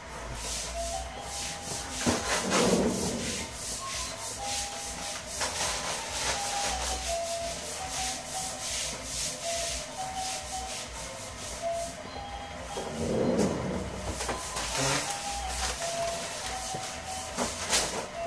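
Plastic grocery bags rustling and crinkling as they are handled, in an irregular crackle that runs throughout, with two louder bursts, one about two seconds in and one about thirteen seconds in.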